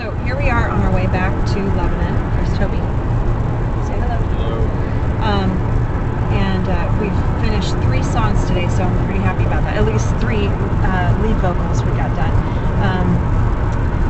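Steady low road and engine rumble inside a moving car's cabin, with voices talking over it.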